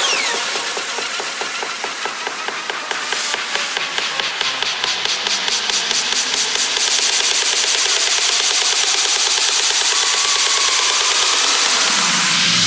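Psytrance breakdown with the kick and bass dropped out: a fast, rattling electronic pulse over a noisy synth texture, with a sweep rising steadily through the second half as a build-up.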